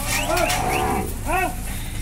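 Steers in a holding pen calling: three short bawls, each rising and falling in pitch, over a low steady background.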